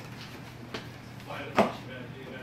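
A single sharp knock about one and a half seconds in, with a faint tap before it, over a steady low hum.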